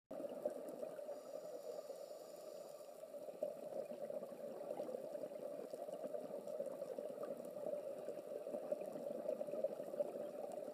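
Faint, steady water noise, a low bubbling rush with no distinct events, as heard in underwater footage.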